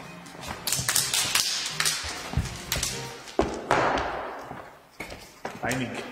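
A run of sharp taps and thuds on a stage, several in quick succession, with a stretch of hissing noise in the middle.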